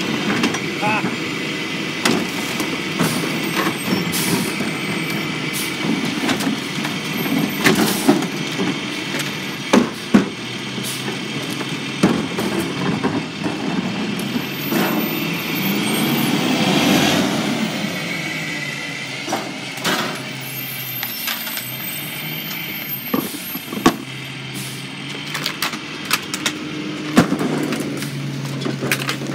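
Rear-loader garbage truck engine running while plastic garbage carts are tipped into the rear hopper, with repeated sharp knocks as the carts bang against the hopper edge and trash drops in. The truck noise swells a little past the middle.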